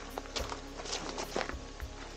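Quiet background music, with a few footsteps and scuffs on the forest ground.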